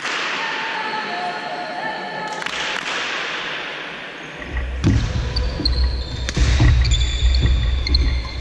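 Badminton doubles rally on a wooden sports-hall floor: sharp racket hits on the shuttle echo around the hall. From about halfway through, players' footsteps thud heavily near the microphone and their shoes squeak on the court.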